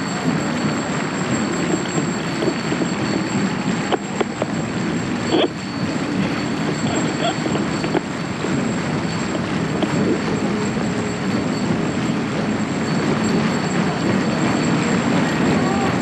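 Steady murmur of a large outdoor crowd of spectators, a dense mass of indistinct voices without music or drumming, with one brief sharp sound about five and a half seconds in.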